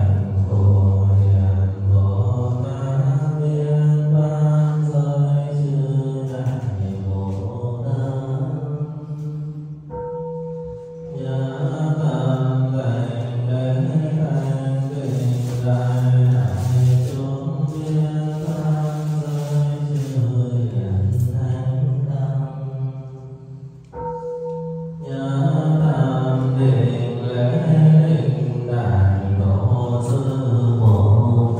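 Buddhist chanting in low, drawn-out held notes. The chanting pauses twice, about ten seconds in and again near 24 seconds, and each time a bell tone rings out briefly on its own.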